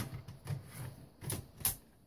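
Allen-Bradley 1756-OA16 output module being slid into a ControlLogix chassis slot by hand: a few sharp plastic clicks and knocks, two of them close together in the second half.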